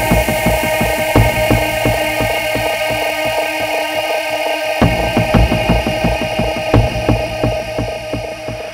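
Drum and bass track: fast, busy breakbeat drums over a held synth tone and heavy bass. The bass and drums drop out for about half a second just before five seconds in, then come back.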